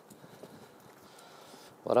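Faint background noise with a few light ticks, then a man's voice starts speaking near the end.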